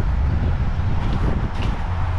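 A red Ford Ranger pickup's engine starting on a jump-start and running steadily: the battery is too weak to start it alone.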